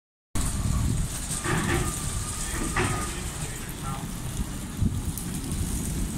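Steady low rumble of coach diesel engines in a covered bus station, with brief snatches of people's voices about one and a half and three seconds in.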